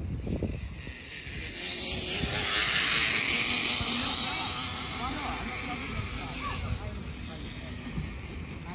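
A rushing noise swells up about two seconds in, peaks a second later and slowly fades, over faint voices of people and children.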